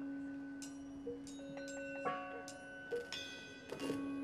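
Improvised percussion music: separate strikes on ringing metal percussion, each leaving a bell-like ring, over a steady low sustained tone that drops out briefly near the end and comes straight back.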